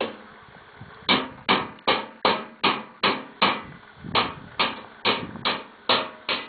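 Evenly spaced knocks, about two and a half a second, starting about a second in and keeping a steady rhythm.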